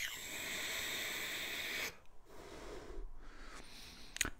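A man breathing during a pause in his talk: one long breath lasting about two seconds, then a shorter, fainter breath.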